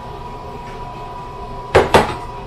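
Milk pouring steadily into a stainless steel saucepan, with a faint ringing tone from the pan, then two sharp knocks in quick succession near the end.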